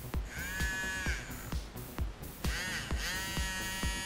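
Small motor of a battery-powered electric eraser buzzing as it is run, under background music with a steady beat.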